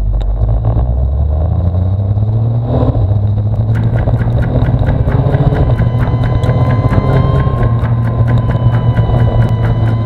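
Motorcycle engine pulling up through the revs in the first few seconds, then running steadily at cruising speed. A quick, regular ticking joins it from about four seconds in.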